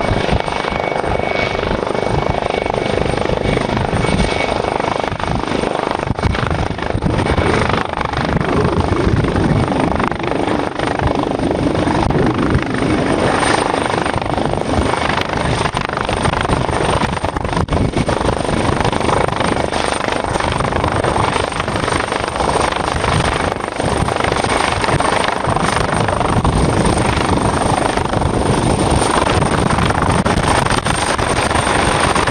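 MH-139A Grey Wolf helicopter hovering low, its twin turboshaft engines and rotor running steadily, with a thin, high steady whine over the rotor noise.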